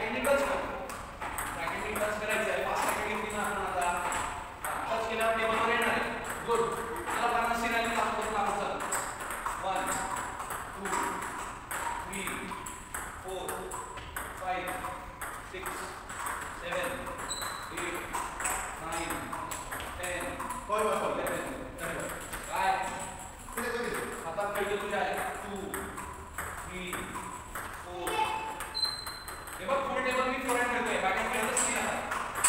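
Table tennis balls in rallies at two tables, clicking quickly and irregularly off the paddles and table tops.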